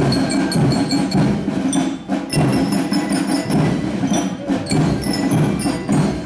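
School marching band playing a march as it parades: drums keep a steady beat under high, ringing bell notes.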